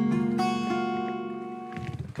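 Acoustic guitar in open D tuning played fingerstyle: plucked notes over a held chord, each left to ring. Two more notes come in during the first second, then the sound fades and is damped shortly before the end.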